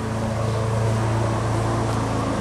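A machine running steadily with a low, even hum, growing slightly louder in the first second.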